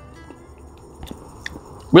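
A man quietly chewing a mouthful of fresh fig, with a few soft mouth clicks; his voice comes in near the end.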